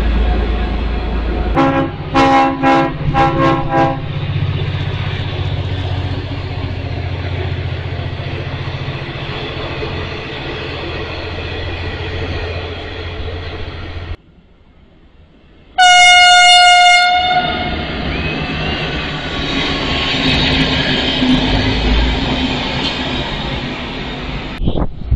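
Train horn sounded in a quick run of about five short blasts, then a single loud blast a little past the middle, the loudest sound. Between them, a passing train rumbles along the track, including V/Line passenger carriages rolling by.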